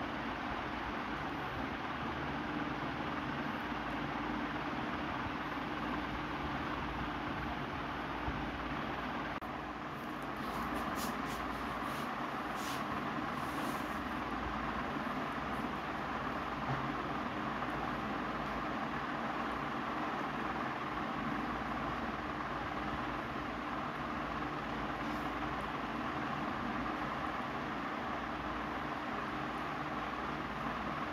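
Steady background noise: an even hiss with a faint low hum, its tone shifting abruptly about nine seconds in.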